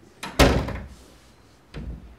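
Wooden interior door shutting: a light click, then a loud thud about half a second in that dies away quickly, and a second, softer thud near the end.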